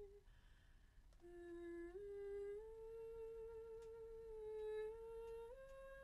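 A woman's voice softly humming long, held notes that climb upward in small steps, with a breath drawn just before the first note about a second in and a slight waver on the highest note near the end.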